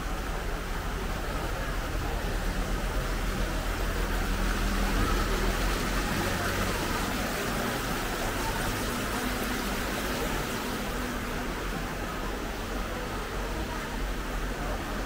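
Steady splashing and bubbling of water from the aerator jets in a koi pond, louder toward the middle, with people talking in the background.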